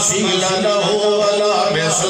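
A man's amplified voice preaching a sermon in a drawn-out, sing-song delivery, with long held notes.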